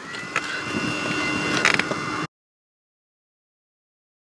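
A vehicle running: a steady hum and rumble with a thin, steady high whine that rises slightly at first. A little over two seconds in, the sound cuts off abruptly into dead silence.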